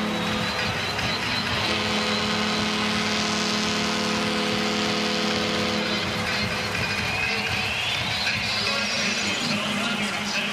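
Music over a ballpark's loudspeakers, a held chord with a rising tone about seven seconds in, over steady crowd noise after a home run.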